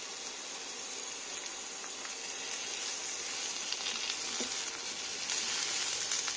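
Sliced vegetables frying in oil in a nonstick pan: a steady sizzle that grows a little louder near the end, with a few faint clicks of a silicone spatula.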